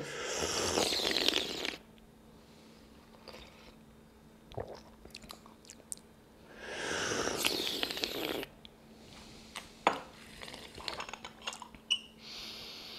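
Two long, loud slurps of tea sipped from small tasting cups, the first at the start and the second about six and a half seconds in, followed by a few light porcelain clicks near the end.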